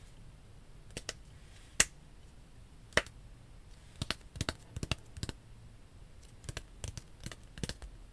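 Hands making sharp taps and clicks close to the microphone in an uneven rhythm: two louder ones about two and three seconds in, then quicker runs of softer ones.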